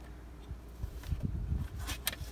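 A hand working the spring clips on a car's air filter housing: faint handling knocks over a low rumble, with one sharp click near the end.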